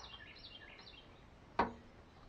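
A bird chirping faintly in a quick series of short, high, falling notes against quiet outdoor background noise.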